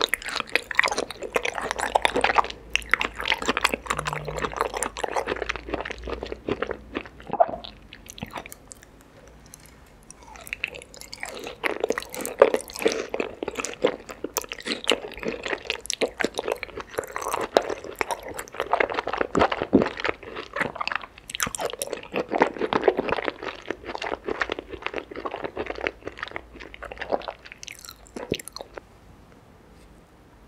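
Close-miked wet chewing and mouth sounds of raw salmon sashimi coated in red sauce, in two long stretches with a quieter pause about nine seconds in and again near the end.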